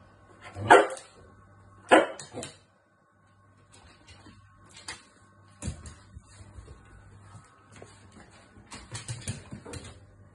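Cavalier King Charles spaniel barking in frustration: two loud barks about a second apart near the start, with a smaller one just after, then a run of softer short sounds from the dog for the rest of the time.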